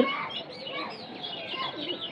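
Small birds chirping in the background: a steady scatter of short, high chirps.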